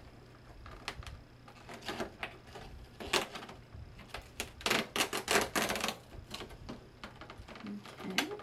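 Cardboard advent-calendar compartment being opened and its contents handled: scattered clicks and crinkles, with a denser burst of rustling and crackling about five seconds in.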